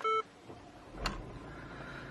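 A single short electronic warning beep from the Mercedes GLE's instrument cluster, sounding with the parking brake malfunction warning, followed about a second later by a faint knock.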